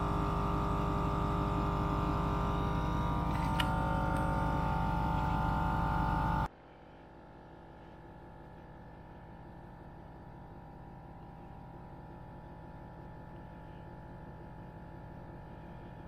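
A GSPSCN 12-volt portable air compressor running steadily while inflating an off-road tire, with a short click about three and a half seconds in. About six seconds in the sound drops suddenly to a much fainter, muffled steady hum heard from inside the truck's cab.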